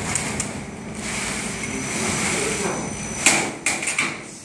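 Factory machinery on a flexible-duct production line, running with a steady din and a faint high whine. Sharp metal knocks come two or three times near the end.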